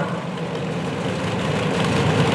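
A vehicle engine idling steadily under outdoor background noise.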